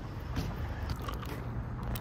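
A hard plum candy being eaten close to the microphone: a few sharp crunchy clicks and mouth sounds over a low steady rumble.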